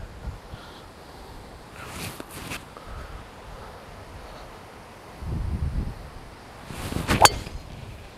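A driver striking a golf ball off the tee: a rising swish of the swing and then one sharp crack of impact about seven seconds in, a well-struck drive. A low wind rumble on the microphone comes a little before.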